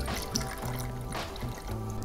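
Background music, with soju being poured from a glass bottle into a metal jigger.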